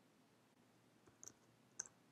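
A few faint computer keyboard keystrokes: two quick clicks about a second in and another near the end.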